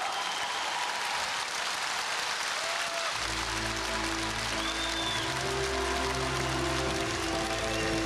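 Audience applauding; about three seconds in, a song's instrumental intro starts with a bass line and held chords, playing on under the applause.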